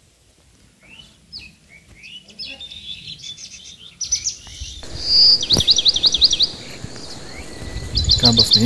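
Birds chirping: scattered short high chirps at first, then from about halfway a louder bird giving one high note followed by a fast run of about ten quick rising-and-falling notes.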